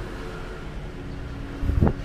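A steady low rumble of background noise, then a brief loud whoosh that rises in pitch near the end.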